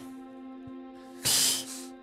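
Background music with steady held notes. About a second and a quarter in comes a short, loud hiss of breath: a player laughing out close to a microphone.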